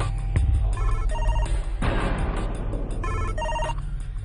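A telephone ringing: two short double rings about two seconds apart, over background music.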